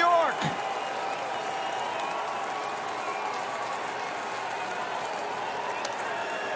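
Baseball stadium crowd cheering and applauding as a steady din after a go-ahead grand slam.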